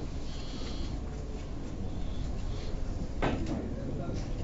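Billiard hall room noise, a steady low hum, with one sharp knock about three seconds in.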